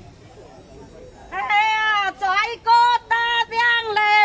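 A woman's voice singing a shan'ge folk song unaccompanied, starting about a second and a half in with long, high, wavering held notes separated by short breaths. Before it there is only a low background murmur.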